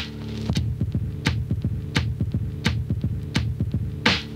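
Funky drum loop: a low, throbbing beat with sharp hits about every three quarters of a second over a steady low bass hum.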